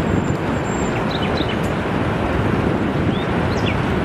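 Ocean surf breaking on a beach: a steady rushing wash of waves, with a few faint high chirps a little after the first second and again late on.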